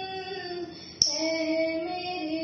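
A young woman singing solo, holding long, slightly gliding notes; she ends one phrase and begins the next about a second in.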